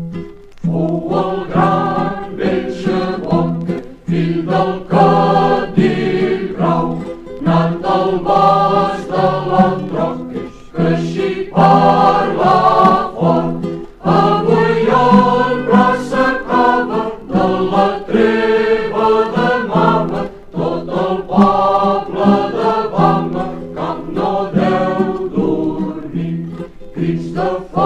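Group of voices singing a folk song together, with acoustic guitar accompaniment, from a 1960s vinyl record.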